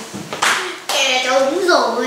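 A single sharp smack about half a second in, then a person's voice speaking.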